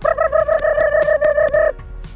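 A man's rapid, high-pitched vocal prompt used to call a dog in: one steady note chopped into about ten quick pulses a second, stopping just before the end.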